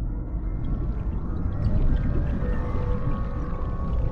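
Film soundtrack of underwater sound design: a deep, steady rumble with long held tones coming in about halfway through, laid under dark music.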